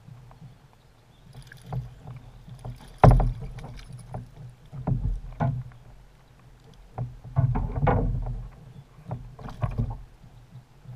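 A hooked smallmouth bass splashing and thrashing at the surface beside a kayak as it is landed, in irregular bursts with knocks against the hull. The loudest splash comes about three seconds in, and a long run of thrashing follows from about seven to eight and a half seconds.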